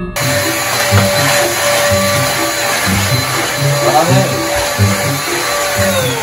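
Cordless stick vacuum cleaner running with a steady high motor whine and rushing air. Near the end it is switched off and the whine falls away in pitch.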